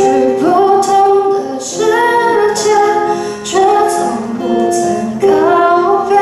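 A woman singing a Mandarin song in sung phrases with short breaks, accompanying herself on an acoustic guitar.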